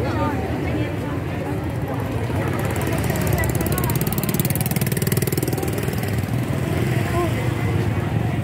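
A motor vehicle's engine running close by, louder from about two and a half to seven seconds in, over the chatter of a crowd.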